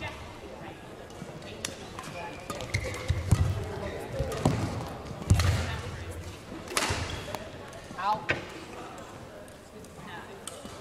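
Badminton rally in a hall: sharp racket strikes on the shuttlecock every second or two, with heavy footfalls and shoe squeaks on the court floor.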